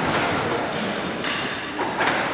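Horizontal steam pumping engine running, its valve gear, rods and cylinders clattering with a steady rhythmic beat that swells roughly every half second.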